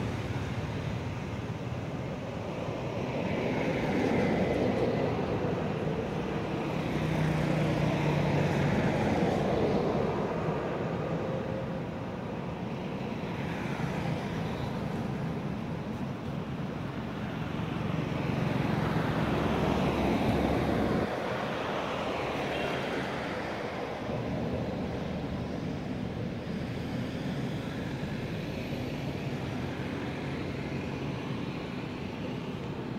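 Outdoor background noise of passing motor vehicles, swelling and fading several times and dropping off abruptly about two-thirds of the way through.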